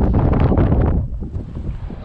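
Strong wind buffeting the microphone in a heavy, low rumble, loudest in the first second and then easing off.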